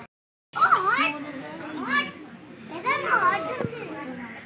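Young children's high-pitched voices calling out and chattering in three short bursts, their pitch swooping up and down, after half a second of dead silence at the start.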